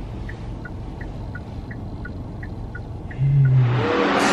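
Steady road and engine rumble inside a moving car's cabin, with a car's turn-signal indicator ticking evenly, about three clicks a second. A little after three seconds in, a loud whoosh with a low hum rises over it: an edited transition sound effect.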